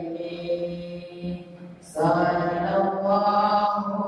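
A group of men chanting an Islamic devotional chant together in unison, on long held notes. The chant softens for a moment and comes back louder about two seconds in.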